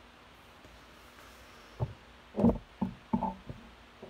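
Handling noise from the recording phone as it is grabbed and moved: a quick run of knocks and thumps starting a little under two seconds in, the loudest about halfway through.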